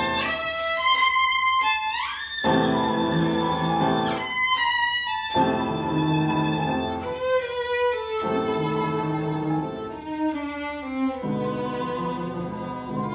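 Solo violin playing sustained, singing melodic lines in a classical piece, with an upright piano accompanying in chords beneath it. About two seconds in, the violin slides up in pitch to a held high note.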